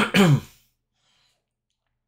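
A man clearing his throat, a two-part 'ahem' that ends about half a second in.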